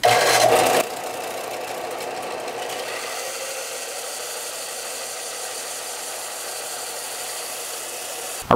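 Harbor Freight Central Machinery 4 x 36-inch belt and 6-inch disc combination sander running with its belt horizontal, a wood block held against the sanding belt. Louder for the first second, then a steady run.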